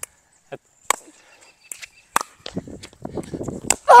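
Pickleball rally: paddles strike the hollow plastic ball three times, about a second and a half apart. Shoes shuffle on the hard court between the later hits.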